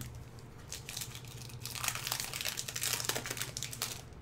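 Plastic wrapper of a Magic: The Gathering booster pack crinkling as it is opened, growing busier from about a second in and loudest in the second half.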